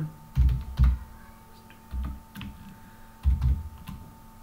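Typing on a computer keyboard: about seven irregularly spaced keystrokes, each with a dull thud.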